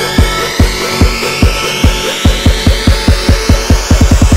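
Electronic dance music build-up: kick drum beats quicken into a fast roll under a rising sweep.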